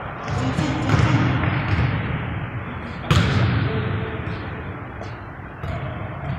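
Basketball bouncing and thudding on a hardwood gym floor, echoing in the large hall; the loudest, a sharp thud, comes about three seconds in.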